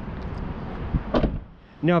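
The side-hinged rear cargo door of a 2021 Lexus GX460 being swung closed and shut, with handling noise and wind on the microphone.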